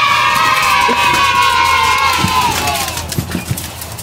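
A group of children cheering together in one long held "yay"-like shout that falls in pitch and fades a little after three seconds in, like an added cheering sound effect.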